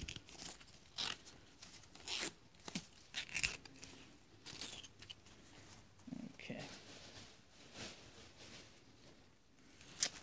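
Palm leaf strips rustling and crackling in the hands, with a few short tearing sounds as stray strands are pulled off, most of them in the first half.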